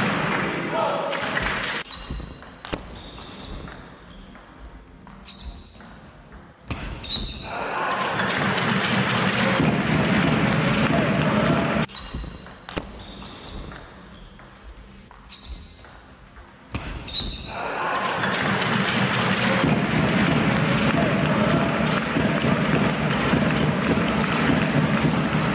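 Table tennis rally in a large hall: the ball clicks off the bats and the table, with a few high shoe squeaks. A loud burst of crowd cheering follows at the end of the point. The rally and the cheering are then heard a second time.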